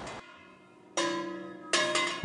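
Two bell-like struck notes, one about a second in and another just before the end, each ringing on with many steady overtones and fading, as part of background music.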